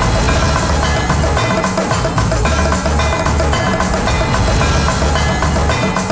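Dramatic background music score with a steady, driving drum rhythm under sustained pitched instrument lines.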